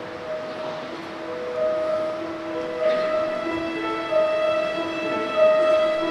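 Slow, sustained chords with steady held notes that shift every second or so, swelling gradually louder: the opening of a piece of church music.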